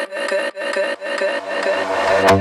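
Electronic dance track in a breakdown with no kick drum: a scratchy, rhythmic synth texture plays, and a low bass line comes in about halfway through.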